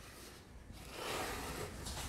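Faint rustling and rubbing of a plastic deli-cup water dish being shifted by hand over paper substrate in a plastic tub, starting under a second in.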